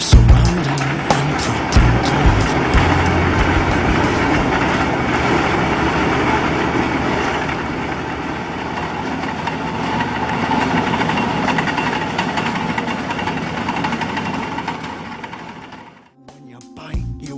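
Truck-mounted geothermal well-drilling rig running steadily, a dense mechanical din of engine and drilling, which fades out near the end. Music carries over for the first couple of seconds.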